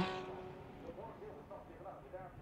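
Faint engine sound of Lamborghini Huracan race cars at racing speed on the circuit, well below the commentary level, with a few weak changes in pitch in the middle.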